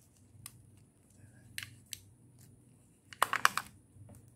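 Light plastic clicks and taps from a makeup powder compact being handled, then a short burst of sharp crackling about three seconds in as a green card packet is handled.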